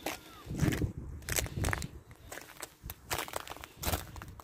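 Footsteps breaking thin ice on frozen puddles over grass: a run of sharp cracks and crunches, with the dull thud of the steps underneath.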